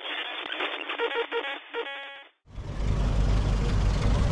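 A channel-intro sting: a thin, hissy effects sound with a few short tones and a fast stutter, which cuts off about two seconds in. After a brief silence comes open-air car-show sound with a steady low rumble.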